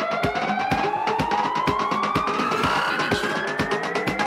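House/techno DJ mix: a steady electronic drum beat under a long siren-like tone that glides slowly and steadily upward in pitch.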